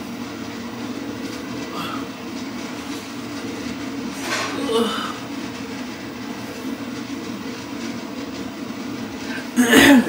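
A steady mechanical hum with a few faint short sounds over it, and a short loud sound just before the end.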